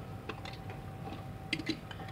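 A few faint light clicks and taps, in two small pairs, as 1/64-scale diecast model cars are handled and set down on a display turntable.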